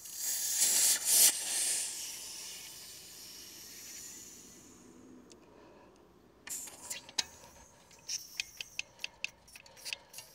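16 g CO2 cartridge discharging through an inflator head into a bicycle tyre: a loud hiss that dies away over about five seconds as the tyre fills properly. Then a run of small clicks and knocks as the inflator is handled at the valve.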